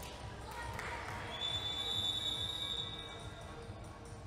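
Basketball bouncing on a wooden gym floor in a large hall. About a second and a half in, one long, high, steady signal tone sounds for about two seconds and stops play.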